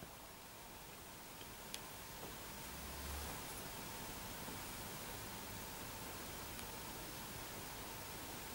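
Quiet room tone with a steady hiss and a faint steady tone, broken by a small tick about two seconds in and a soft low bump around three seconds in, from a glass pendant lamp shade being handled and turned on its cable.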